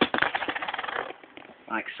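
Fingertips rubbing quickly over a paper-wrapped coin on a playing card. It makes a dense scratching rasp that lasts about a second and then stops.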